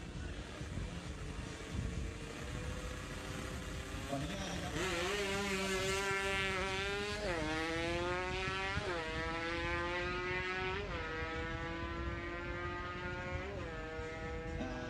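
Drag-race motorcycle engine held at steady revs at the start line. A few seconds in it launches and accelerates hard down the strip, the pitch climbing through each gear and dropping at each of four upshifts.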